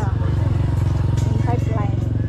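Small motorcycle engine running close by as it passes, a steady low engine note.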